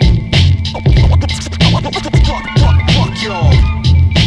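Turntable scratching over an instrumental hip-hop beat: short back-and-forth pitch sweeps of a scratched sample cut across a steady beat with a heavy kick drum.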